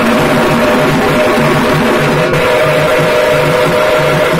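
A group of tamate frame drums beaten with sticks together in a fast, steady, repeating rhythm, loud and continuous, with the drumheads ringing.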